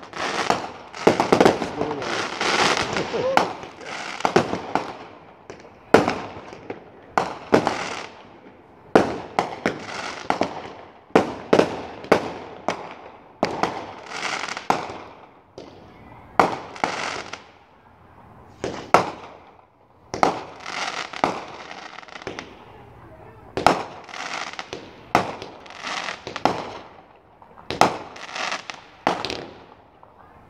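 Aerial fireworks going off in quick succession: many sharp bangs, each ringing on briefly as it fades, with a short lull a little past the middle before the volleys resume.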